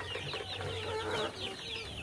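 A pen of young chickens peeping: many short falling chirps, several a second, overlapping from different birds.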